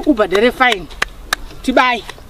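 Voices speaking, broken about a second in by two sharp clicks a third of a second apart.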